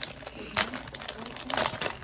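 A bag crinkling as it is handled and opened by hand, in a run of short crackles with louder ones about half a second in and again near the end.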